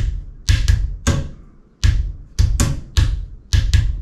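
Hand drumming on a chair and lap: flat-palm slaps for a low bass-drum sound and fingertip taps for a snare sound, playing a hip hop-style groove whose pattern repeats about every two seconds.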